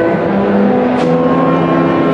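Symphonic concert band playing held wind chords, with saxophones among the voices. There is a single sharp hit about halfway through.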